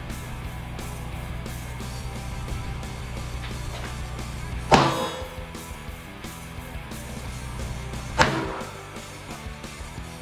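Two gunshots about three and a half seconds apart, each a sharp crack with a short ringing tail, over steady guitar music.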